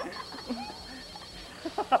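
A group of people laughing and calling out, fairly quiet, with a louder voice near the end. A faint high-pitched pulsing tone runs in the background and stops a little after the middle.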